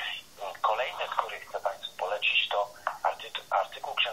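A person talking continuously, the voice thin and narrow-band, cut off below about 500 Hz and above about 4 kHz, like speech heard over a telephone line.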